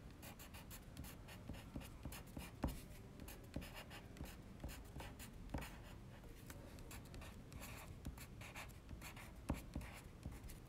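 Caran d'Ache Luminance colored pencil writing on sketchbook paper: a faint run of short scratchy strokes as letters are formed, with a few sharper ticks where the tip comes down on the page.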